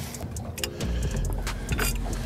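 Boat's outboard motor running with a steady low rumble, with a few sharp clicks and knocks from gear being handled.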